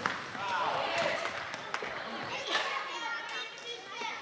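Children's voices calling out during floorball play in a sports hall, with scattered sharp clicks of plastic sticks and ball knocking on the floor.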